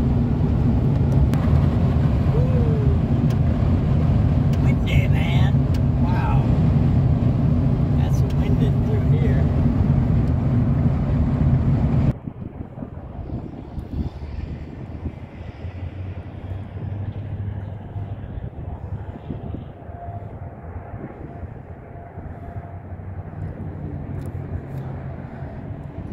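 Steady road and engine rumble inside a van cruising on a highway. About halfway through it cuts off suddenly to a much quieter, dull outdoor background noise.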